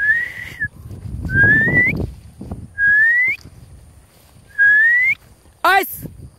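Four short whistle blasts, each rising in pitch and lasting about half a second, given as signals to a bird dog in training. Near the end comes one brief, wavering burst.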